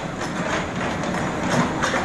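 Diesel engine of a JCB 3DX backhoe loader running steadily, with a few knocks and scrapes as its bucket works soil and rubble, two of them close together near the end.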